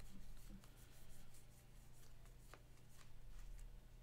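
Faint rustling and sliding of a stack of glossy Bowman Chrome baseball cards being flipped through by hand, with a couple of light clicks, over a steady low hum.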